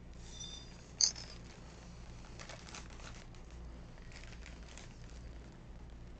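A plastic snack bag of Pipcorn Twists being handled: soft crinkling in two short spells, with one sharp click about a second in.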